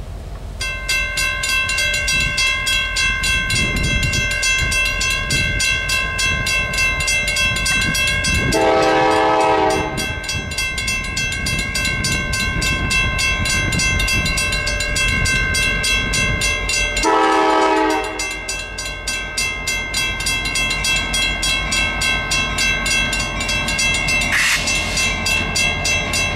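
CSX EMD SD70M diesel locomotive sounding its horn for a grade crossing: two long blasts, the first about 8 seconds in and the second about 17 seconds in, over the low rumble of the approaching train. Behind it, from about half a second in, a grade-crossing bell rings steadily.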